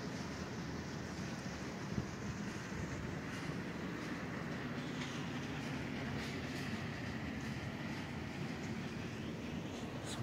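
Steady indoor room noise: an even low rumble and hum, with a single faint click about two seconds in.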